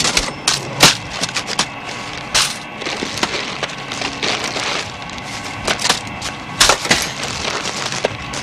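Paper bag crinkling and crunching as it is stuffed in a hurry, a rapid irregular run of crackles with a few sharper snaps about a second in and again near the end.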